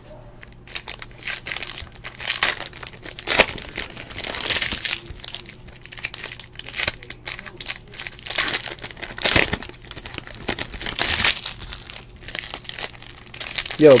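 Trading card pack wrappers crinkling and tearing as packs of basketball cards are opened by hand, with the cards rustling as they are handled, in irregular crackles.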